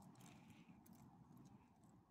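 Near silence with faint scattered clicks from a small dog's paws on gravel.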